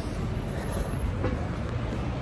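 Steady city street traffic noise, an even rumble of passing vehicles with no single vehicle standing out.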